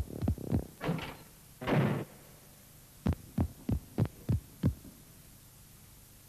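Cartoon sound effects. A quick run of short falling notes comes first, then two hissing swishes about one and two seconds in. Six sharp taps follow in an even run from about three to nearly five seconds in.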